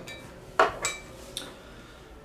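Three light clinks and taps of small hard objects against each other or the table, the second and third with a brief high ring.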